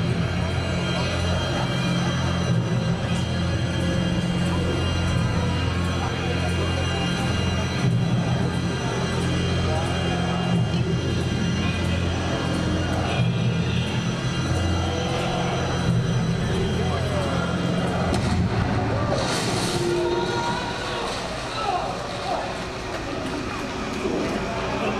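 Low, droning, suspenseful pre-show background music over the chatter of many people talking in an audience. The music's low drone drops out near the end, leaving the voices.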